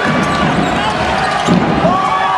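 Live basketball game sound: a ball thudding on the hardwood court about one and a half seconds in, with short rising-and-falling squeaks and voices over a constant arena din.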